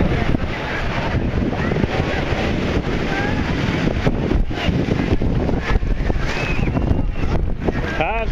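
Surf breaking and washing up the beach, under heavy wind noise on the microphone, with faint distant shouts of people in the water.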